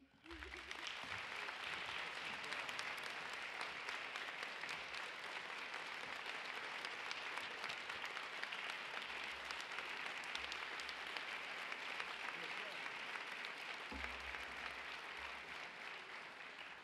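A large audience applauding: many hands clapping. It starts abruptly and holds at a steady level throughout.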